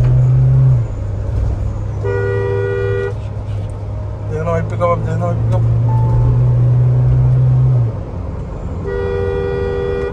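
Car horn sounded twice, each blast about a second long, heard from inside a Mahindra Thar's cabin. Under it runs a loud, deep, steady drone from the Thar's engine and the road while the car accelerates at highway speed. The drone cuts off abruptly just after the start and again about eight seconds in.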